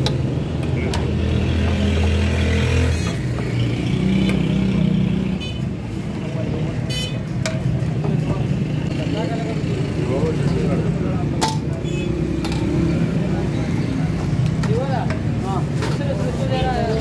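Roadside street noise: running vehicle engines and a low hubbub of voices, with a few short sharp clicks, such as a steel ladle knocking against a steel cooking pot.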